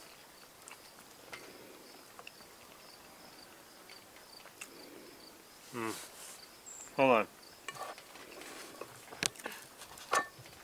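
Faint, steady pulsing chirp of insects. Two short vocal murmurs, about six and seven seconds in, are the loudest sounds, and a few light clicks come near the end.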